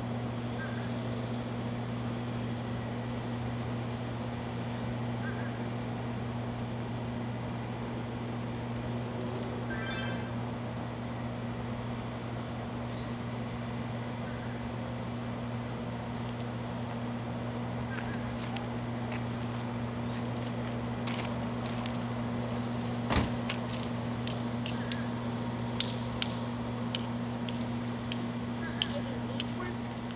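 Distant Norfolk Southern freight train led by GE Dash 9-40CW diesel locomotives: a steady low drone as it approaches, with scattered light clicks and a knock about two-thirds of the way through.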